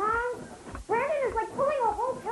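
A cat meowing about three times in short calls, each rising and falling in pitch.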